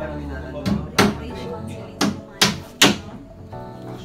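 Claw hammer striking a plywood cabinet: a pair of sharp blows about a second in, then three quicker blows a little after the two-second mark.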